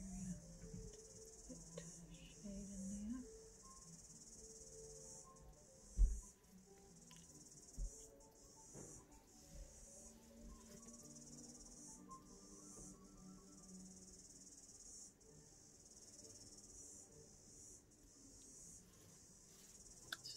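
Steady, high-pitched insect chirring throughout, with faint soft music underneath. A single dull thump about six seconds in.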